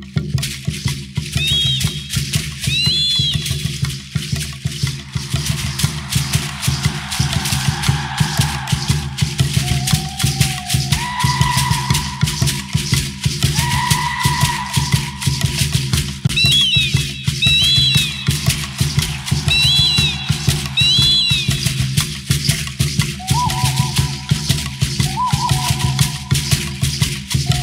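Music for an Aztec-style dance: a steady low drone under dense, continuous shaking rattles, with short high whistle-like glides in clusters and a few held higher tones over it.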